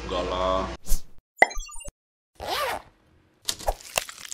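Café chatter with a spoken 'iya' breaks off abruptly, and a run of short logo-animation sound effects follows over dead silence: a sharp snap, a burst of glitchy electronic blips, a swoosh, then quick clicks near the end.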